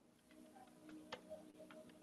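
Faint, irregular clicks of computer keyboard keys being typed, over near silence.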